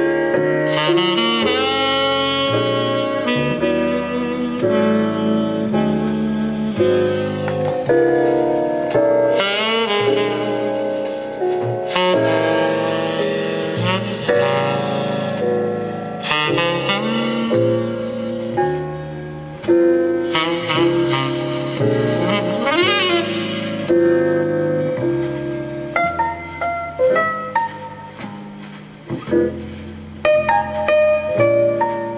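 Pre-recorded jazz-style music with saxophone and piano played back from cassette on a Marantz PMD221 mono portable cassette recorder, running continuously, with a sliding bend in one note about two-thirds of the way through.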